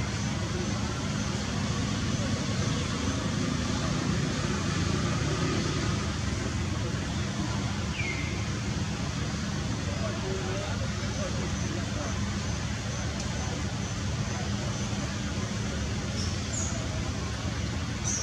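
Steady outdoor background noise like distant road traffic, with indistinct voices, and a single short falling high chirp about eight seconds in.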